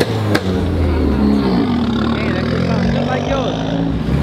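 Car engine running close by at low revs, its pitch drifting up and down as it is blipped, with one sharp click about a third of a second in.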